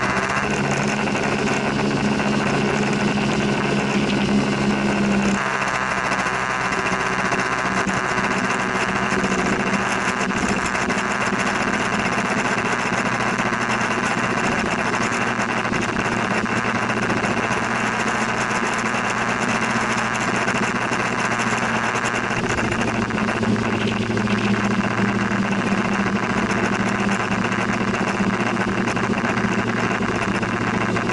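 Small scooter engine running steadily at riding speed over a constant rush of road and wind noise. The engine note shifts about five seconds in.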